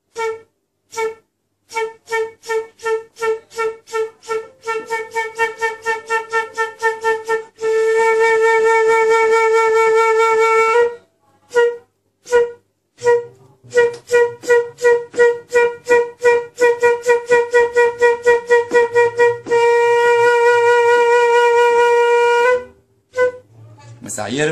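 Concert (transverse) flute playing a single note around A: short tongued notes that speed up, then a long held note, with the whole pattern played twice. This is a long-tone and breath-attack exercise driven from the diaphragm.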